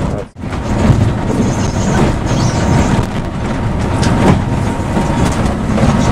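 Cabin noise of a coach on the move: steady engine and road rumble with occasional light rattles. A brief gap in the sound comes just after the start.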